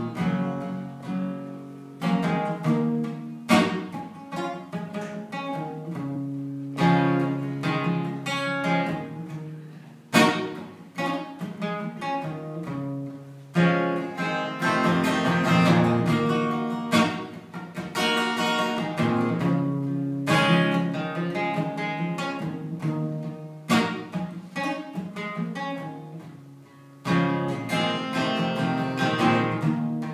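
Acoustic guitar played alone, strummed chords in a phrase that repeats about every three and a half seconds, with no singing over it.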